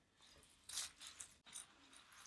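Plastic pellets inside a fabric beanbag rattling faintly as a hand rummages through them, in a few short bursts.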